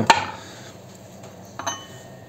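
A thick rusty steel plate set against a lathe's steel parts: a sharp metallic clink that rings briefly at the very start, and a lighter ringing clink about one and a half seconds in.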